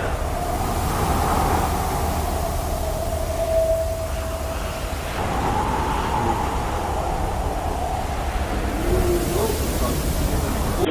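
Steady rumbling, rushing noise of storm wind and heavy seas against a container ship, heard from behind the bridge window, with a thin whistling tone drifting in and out.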